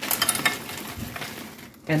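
Frozen peas and carrots rattling as they are handled and measured out of their bag: a quick, dense patter of small hard clicks, busiest in the first second and thinning out after.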